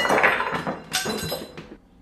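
Lemons tumbling out of a cardboard cereal box and landing in a bowl: a sudden clatter of thuds and knocks, with a second burst about a second in, then dying away.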